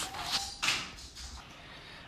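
Pot of chicken soup boiling, a soft noisy bubbling with two louder rushes in the first second before it settles quieter.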